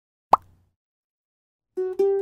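A single cartoon 'bloop' pop sound effect for a giant soap bubble bursting: one short pop with a quick upward glide in pitch, about a third of a second in. Plucked ukulele music starts near the end.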